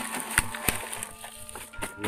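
Woven plastic sacks rustling and scraping close to the microphone, with a few sharp clicks, the loudest about half a second in. Background music of steady chime-like tones plays underneath.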